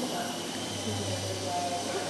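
Faint, indistinct voices of people talking over a steady low hum and hiss.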